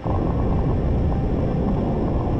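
Muffled, dense rumbling roar of liquid ammonia and liquid hydrogen chloride reacting violently, starting abruptly as the mixture erupts.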